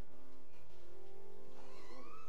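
Church music during Communion: held notes and chords sustained steadily, with a higher voice-like line sliding up in pitch near the end.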